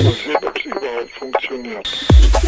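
Tech house track in a short breakdown: the kick drum and bass drop out, leaving a band-limited, radio-like spoken vocal sample.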